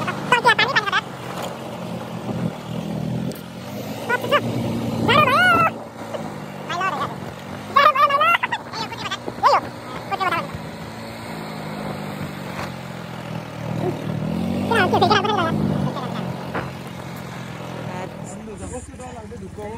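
A vehicle's engine running, its hum rising and falling with the revs, with people's voices calling out over it several times.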